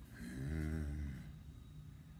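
A man's short wordless vocal sound, held for about a second just after the start, its pitch wavering slightly.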